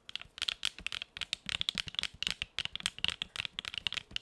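Long acrylic nails tapping and scratching over a wooden house-shaped advent calendar and its wooden number tags, a quick, uneven run of small clicks, several a second.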